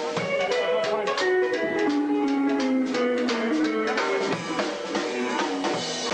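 Live country band playing a rockabilly number: guitars over a drum kit, with sharp drum hits keeping a steady beat.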